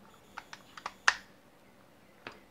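A few light plastic clicks and taps as a figure's feet are pressed and seated onto its hard plastic stand base, with one sharper click about a second in.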